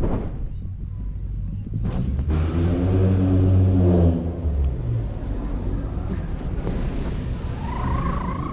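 A motor vehicle's engine drone, steady and low, rising to its loudest about three to four seconds in and fading by about five seconds, as a vehicle passes.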